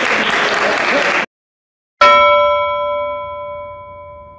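Crowd noise from the fight hall cuts off about a second in; after a short silence a single bell chime is struck about halfway through and rings on, slowly fading.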